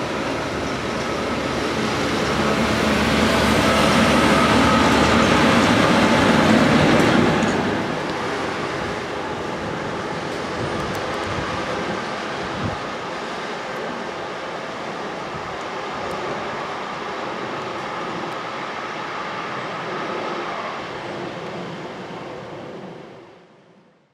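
A pair of Class 73 electro-diesel locomotives passing on the rails. The noise builds to its loudest about four to seven seconds in, drops as they go by and holds lower as they move away, then fades out at the end.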